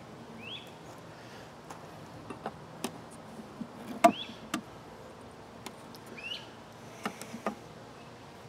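Honeybees humming around an open top bar hive, with sharp knocks and clicks of the metal hive tool and wooden bars being handled. The loudest knock comes about halfway through, as the hive tool is laid down on the wooden bars. A short rising chirp sounds three times in the background.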